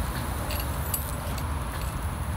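Faint clinks of small metal drum-mount hardware, the loose bolts and bracket just removed, handled in the fingers over a steady low rumble of background noise.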